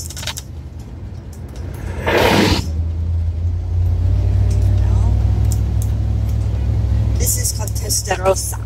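Vehicle engine and road noise heard from inside the cab while driving slowly, a steady low rumble that grows louder about two and a half seconds in as the vehicle picks up speed, with a brief rushing noise just before.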